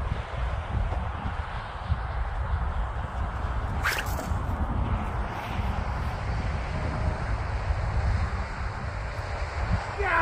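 Wind buffeting the microphone: a steady low rumble with a hissing haze. A brief rising swish cuts through about four seconds in.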